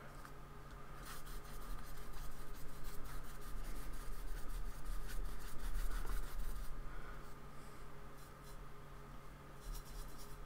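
Flat paintbrush stroking acrylic paint across paper in a run of short scratchy strokes, which thin out about seven seconds in, over a steady low hum.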